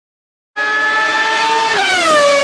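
Race car pass-by sound effect: a high, steady engine note that starts suddenly about half a second in, then drops in pitch near the end as the car goes past.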